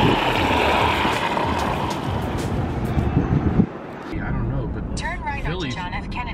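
A curling stone sliding down the lane with a steady grinding rush, which cuts off suddenly about three and a half seconds in. Then car road rumble with voices talking.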